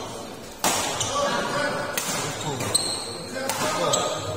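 Badminton rackets striking a shuttlecock during a doubles rally, about three sharp hits roughly a second and a half apart, echoing in a large hall, with spectators' voices underneath.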